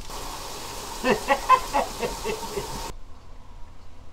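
Kimchi stew boiling hard in a lidded pot, a steady hiss of steam and bubbling that cuts off suddenly about three seconds in. A short burst of laughter sounds over it in the middle.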